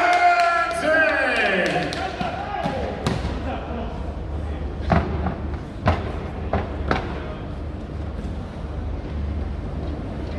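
A ring announcer's long, drawn-out call of the winner's name over the arena speakers ends about two seconds in. Then come about five sharp knocks and thumps, over the steady low hum of a large hall.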